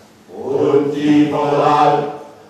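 A group of men chanting a line together in unison on long held notes, coming in loudly about a quarter second in after a brief lull.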